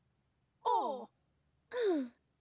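Cartoon character voices: two short vocal sounds about a second apart, each falling steeply in pitch, like drawn-out sighs.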